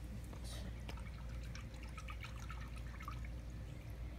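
Faint, scattered drips and small plinks of liquid running off a seashell held in metal tongs and falling into water.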